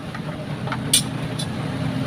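A test light's alligator clip snapping onto the motorcycle battery's positive terminal: one sharp click about a second in and a lighter one just after. A steady low hum runs underneath.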